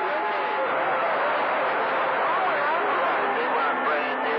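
CB radio receiving skip on channel 28: a distant man's voice comes through garbled and hard to make out, under steady static hiss. Thin steady whistle tones sit behind it, and one stops about half a second in.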